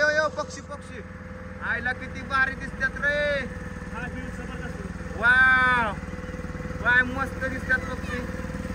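A small motorboat's engine running steadily as the boat moves across open water, with voices briefly calling out over it a few times.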